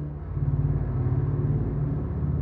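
Low, dark sustained texture from a sampled-clarinet virtual instrument, swelling about a third of a second in with a rapid flutter running through it.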